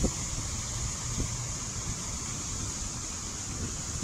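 Steady rushing of a fountain's water jets falling into the basin, with a low rumble of wind on the microphone and a couple of faint knocks.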